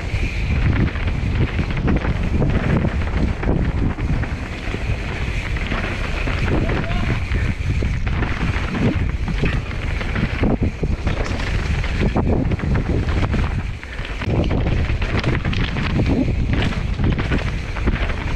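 Wind rushing over the camera microphone and mountain-bike tyres rolling fast over a dirt and gravel trail, with frequent knocks and rattles from the bike over rough ground.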